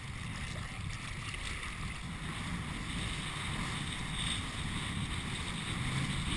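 Wind rumbling on an action camera's microphone over a steady rush and splash of choppy water as a kitesurfer is pulled through it.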